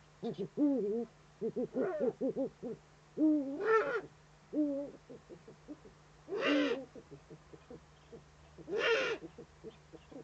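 Eurasian eagle-owl calling at its nest: a run of short, soft notes that bend up and down in pitch, broken by three louder, harsher calls a few seconds apart.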